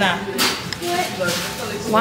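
Speech: a short "nah" and other voices over the background of a busy restaurant dining room.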